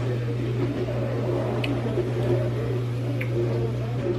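Steady low hum of a running kitchen appliance or small motor, with two faint clicks about one and a half and three seconds in.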